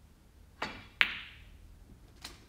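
Snooker shot: a softer tap of the cue tip on the cue ball, then a loud, sharp click of the cue ball striking an object ball about a second in, ringing briefly.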